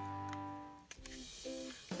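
Background guitar music: a held chord dies away in the first second, then a few short plucked notes.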